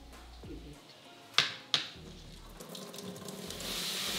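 Two sharp knocks a third of a second apart, about a second and a half in. Then tap water runs into a stainless-steel kitchen sink, its hiss growing louder toward the end.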